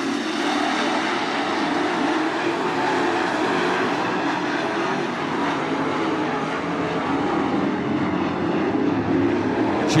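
Dirt late model race cars' V8 engines running hard around the track as the field races under green. It is a steady, continuous drone whose pitch keeps rising and falling slightly.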